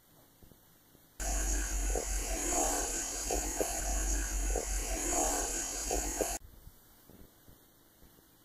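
About a second in, a loud stretch of boosted recorder audio full of hiss and low hum starts abruptly and cuts off suddenly about five seconds later. It is played as a possible ghostly voice saying "get out", an EVP.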